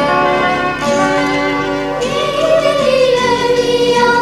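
Church choir's Malayalam Christmas carol with instrumental accompaniment: steady sustained accompaniment notes, with voices coming in about halfway through.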